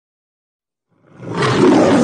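Lion roaring: the Metro-Goldwyn-Mayer logo roar, starting about a second in out of silence and quickly building to a loud, rough roar that carries on past the end.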